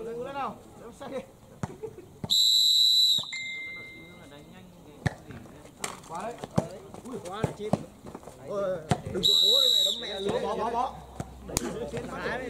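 Volleyball referee's whistle blown twice, about seven seconds apart, each a shrill single-pitched blast just under a second long: the first to signal the serve, the second to end the rally.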